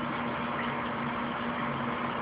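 Steady background hiss with a low, even electrical hum.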